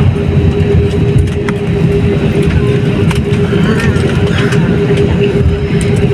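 Jet airliner cabin noise as the plane rolls along the runway after touchdown: a loud, steady low rumble of the engines and the wheels on the runway, with a steady hum running through it.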